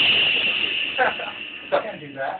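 Loud music fading out over the first second and a half, with short bursts of a person's voice breaking in near the end.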